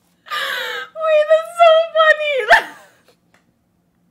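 A woman's high-pitched vocal reaction: a short breathy shriek, then a long wavering high squeal that drops off in a falling note about two and a half seconds in.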